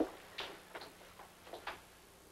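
Footsteps on a hard floor: about six light, irregularly spaced knocks.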